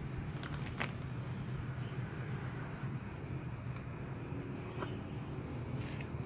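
A clear plastic bag crinkles in short bursts in the first second as it is handled, over a steady low background hum. A few faint bird chirps come in the middle.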